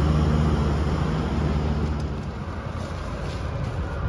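An engine running at a steady idle, a low hum that fades out a little past halfway, leaving faint outdoor noise.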